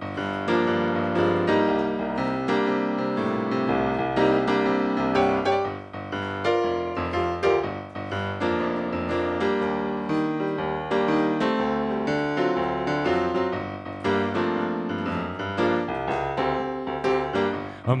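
Piano sound from a Yamaha electronic keyboard: a slow solo introduction of sustained chords over a moving bass line. A man's singing voice comes in at the very end.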